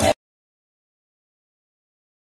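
Music and crowd noise stop abruptly just after the start, leaving dead digital silence.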